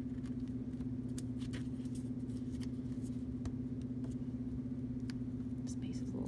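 Faint paper rustles and light clicks as cut paper shapes are pressed and smoothed down by hand while being pasted, over a steady low hum.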